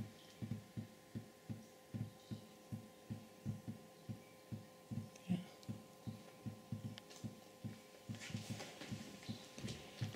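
Water from the nozzles of a water-string apparatus dripping into the vessel below: a steady run of dull, low drips, about three or four a second, over a faint steady hum.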